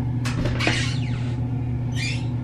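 A steady low hum, with a short hiss about a quarter of a second in and another brief hiss near the end.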